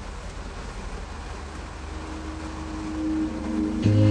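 Low steady rumble of a car cabin, with a held tone fading in about halfway and growing; music with a heavy bass comes back in just before the end.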